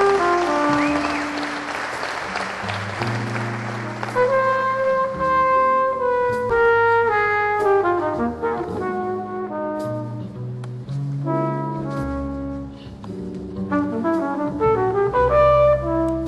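Live jazz combo: a brass horn plays a slow melody in long held notes over double bass and piano, coming in about four seconds in after a few seconds of a dense noisy wash.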